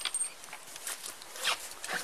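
Soft scraping and rustling with a few light clicks, handling noise at close range.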